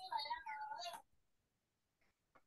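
A high, wavering voice-like call with a strong pitch near 1 kHz that stops about a second in.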